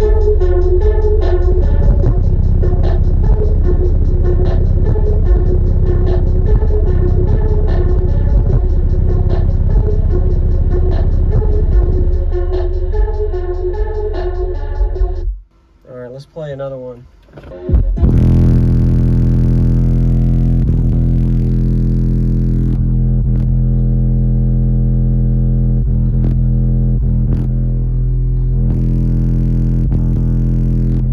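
Bass-heavy music played loud through a car audio subwoofer system. A dense electronic track runs for about fifteen seconds and cuts out, then after a short quiet gap a second track starts with long, held deep bass notes that step to new pitches every few seconds.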